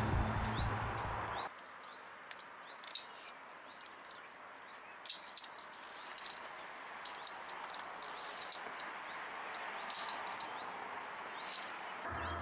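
Background music stops about a second and a half in, and then via ferrata carabiners and climbing gear clink lightly against the steel cable and each other: short metallic clicks every second or two.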